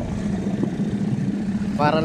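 ATV (quad bike) engine idling steadily close by.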